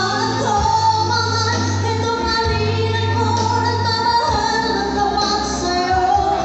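A woman singing a ballad live into a microphone over instrumental accompaniment, holding long sustained notes.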